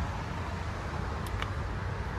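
Steady low background rumble, like a motor or traffic, with two faint clicks about a second and a half in.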